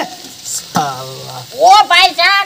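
Shredded cabbage sizzling in a wok over a wood fire. A short pitched voice sound comes about a second in, and talking starts near the end.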